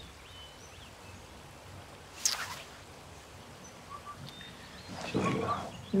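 Quiet outdoor ambience with faint birds chirping now and then. A brief sharp high sound comes about two seconds in, and a short soft noisy sound comes near the end.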